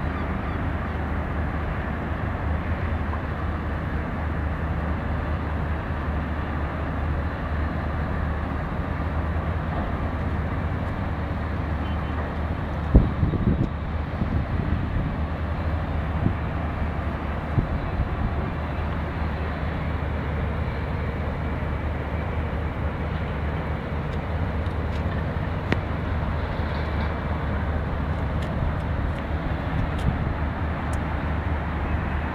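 Steady background roar of distant road and port traffic heard from high above, with a constant low hum and a few brief knocks about halfway through.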